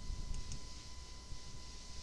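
Wrench turning a rusty toilet closet bolt at the floor flange: a couple of faint metal clicks over low handling rumble.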